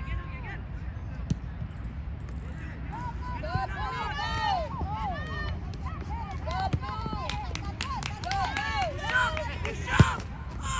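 Distant shouts and calls from players across the field, many overlapping, growing busier a few seconds in, over a steady low rumble of wind on the microphone.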